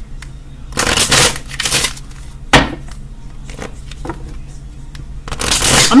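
A tarot deck being shuffled by hand: rustling bursts of cards sliding against each other, with a sharp snap about two and a half seconds in and another about a second later.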